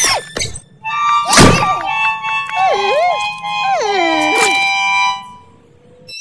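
Cartoon soundtrack: a thunk right at the start and another about one and a half seconds in, then wordless character vocal sounds sliding up and down in pitch over background music, fading out near the end.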